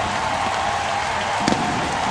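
Ballpark crowd cheering a walk-off win, with a faint steady whistle-like tone underneath and a sharp crack about one and a half seconds in.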